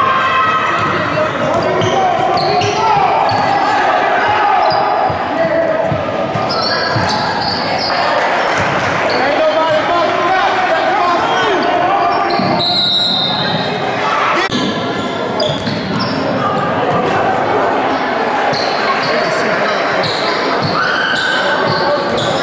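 Live basketball game sound in a gymnasium: a basketball bouncing on the hardwood floor amid indistinct shouting voices, echoing in the large hall.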